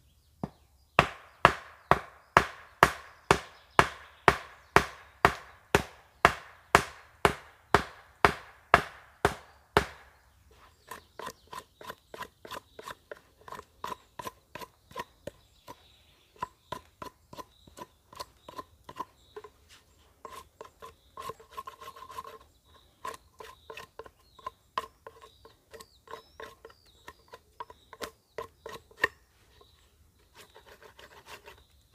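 Hatchet blows on a wooden stake, about two a second, about twenty in a row. About ten seconds in they give way to a large knife carving a wooden stake: lighter, uneven shaving strokes of steel on wood.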